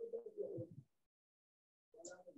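Faint cooing of a pigeon, one short coo of under a second, heard over the video call's audio.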